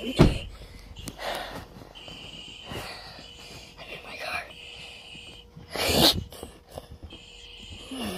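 Phone held close to the mouth picking up handling noise and soft breathing: a sharp bump just after the start, rustles and breaths through the middle, and a louder breathy burst about six seconds in.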